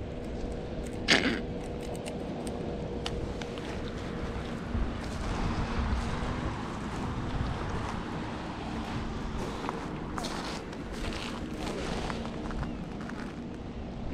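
Steady outdoor noise on a pebble and seaweed beach, with scattered crunching footsteps and a few sharp clicks, loudest about a second in and again around ten to twelve seconds in, over a faint steady hum.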